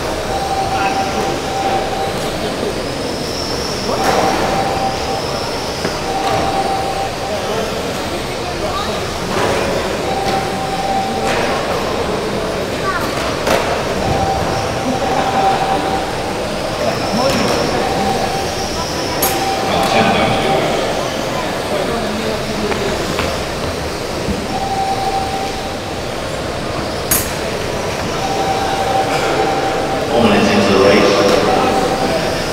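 Several 1/12-scale GT12 electric RC race cars running on a carpet track in a reverberant hall. Their electric motors whine high, rising and falling as they accelerate and brake, with a recurring steady tone and occasional sharp clicks.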